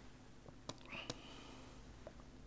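Quiet room hum with two sharp mouse clicks about a second apart near the middle, advancing the slide, and a short breathy hiss around them.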